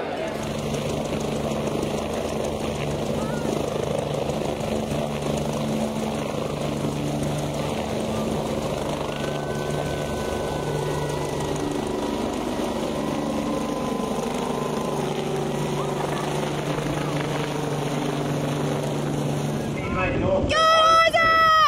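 A rescue helicopter hovering low, its turbine engines and rotor running steadily: a constant dense noise with steady low tones and a fast rotor beat underneath.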